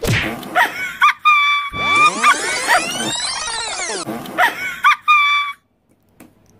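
Edited-in comedic sound effect: high held electronic tones broken by quick warbles, then a burst of sweeping rising-and-falling glides, then the held tones again. It starts suddenly and cuts off abruptly shortly before the end.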